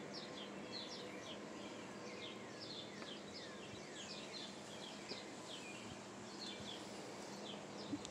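Faint birds chirping in the background: many short, falling chirps repeating all through, over a low steady hiss.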